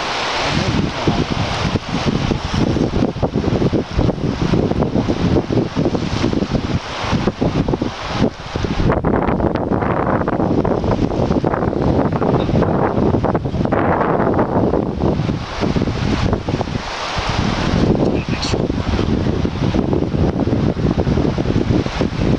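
Wind buffeting the microphone: a loud, rushing rumble that swells and eases in uneven gusts.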